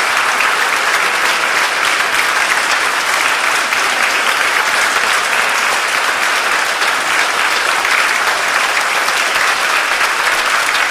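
Concert audience applauding, steady and sustained, with no music playing.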